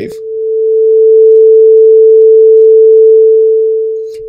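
A pure 442 Hz sine tone, a single steady pitch, played alone. It swells in over about the first second, holds at an even loudness without any pulsing, and fades away near the end.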